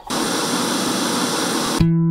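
Hiss of static noise that starts suddenly, runs for just under two seconds and cuts off sharply. Music with a guitar comes in near the end.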